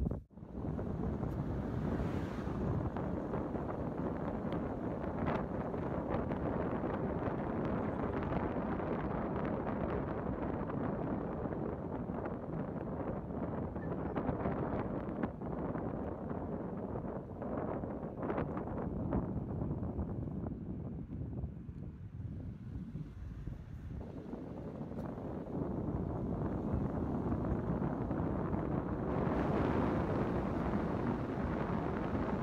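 Wind buffeting the microphone: a steady, low rushing noise that fluctuates and eases off for a few seconds about two-thirds of the way through.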